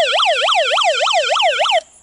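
Electronic siren of a Life Gear hand-crank emergency radio flashlight, a loud rapid warble sweeping up and down about five times a second, switched off abruptly just before the end.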